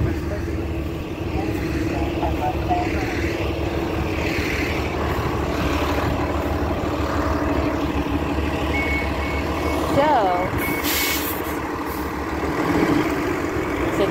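A city bus's engine running close by with a steady low rumble. About nine seconds in comes a run of short high beeps, and a burst of air hiss near the eleventh second.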